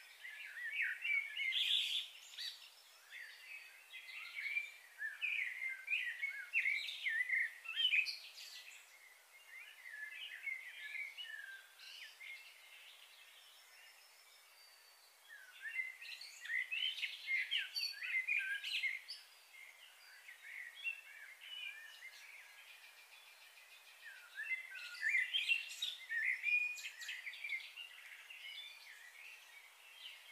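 Birds chirping in three busy bouts of many short, overlapping calls, with quieter pauses between them.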